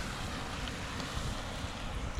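Wind rumbling on the microphone over the steady noise of street traffic.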